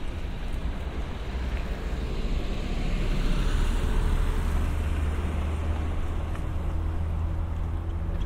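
Road vehicle going past: a steady low rumble with a hiss that swells and fades about three to five seconds in.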